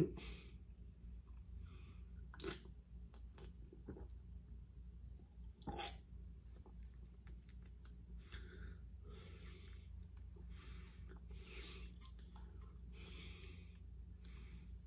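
Quiet sounds of a person drinking from a can: a couple of sharp swallows or lip smacks, the louder one about six seconds in, then soft breaths through the nose every second or so while tasting.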